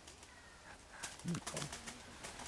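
Quiet outdoor ambience with a faint bird call, and a word spoken softly about a second and a half in.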